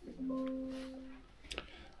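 A short musical note, chime-like with a plucked-string quality, that sets in and fades away over about a second, followed by a faint click.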